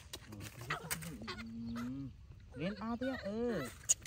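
Vocal calls: one held note about a second in, then a quick run of short rising-and-falling calls near the end.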